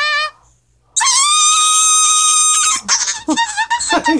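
Auto-tuned voice recording played back from a phone's vocal app. A short pitch-corrected note cuts off, and after a brief pause a long high held note comes in about a second later, its pitch locked perfectly flat, then breaks into choppy auto-tuned voice sounds near the end.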